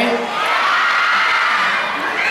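A crowd of fans screaming and cheering, a steady wall of overlapping high-pitched shrieks.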